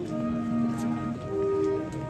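A procession band playing a slow Holy Week march, with wind instruments holding long notes that step through the melody.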